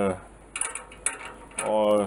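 A few faint, irregular metallic clicks and light rattles from small metal parts being handled and fitted on a homemade wheeled frame, in the middle of the stretch between a drawn-out hesitation sound and the next word.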